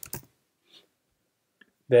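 A few quick, sharp clicks at the start, then near silence broken by a couple of faint ticks. These are the computer's input clicks while an email address is typed in and picked from the suggestions.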